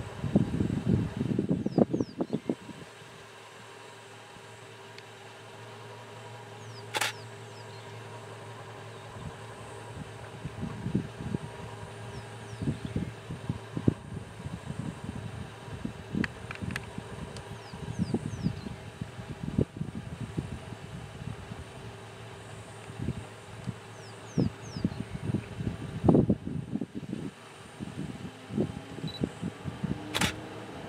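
Outdoor bush ambience: a steady faint hum with a thin high tone, broken by irregular low crackling and rumbling bumps on the microphone. There are a few faint short high chirps, and a single sharp click about seven seconds in.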